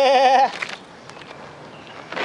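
A man singing a held "yeah" with a wide, fast vibrato for about half a second. After it come only a few faint scuffs of feet on gravel.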